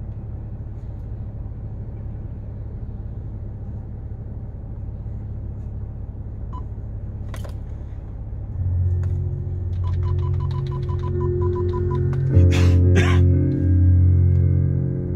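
A steady low rumble in a car cabin. About eight and a half seconds in, music with long, deep sustained notes starts playing through the car's speakers from a demo video on the Android head unit, growing louder near the end, with a few sharp clicks.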